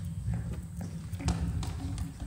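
Scattered light taps on a laptop or tablet keyboard, about half a dozen irregular clicks, over a steady low rumble.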